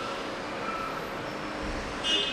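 Steady room tone: an even background hiss with no distinct events.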